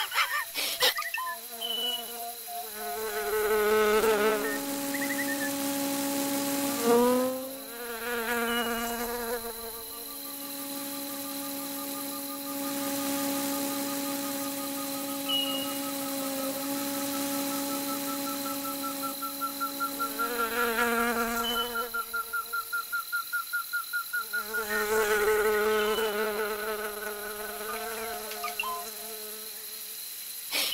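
Sound-effect buzz of a ladybird's wings in flight: a steady, pitched hum with a wavering edge that swells and fades a few times, with a thin whine rising slowly in pitch through the middle.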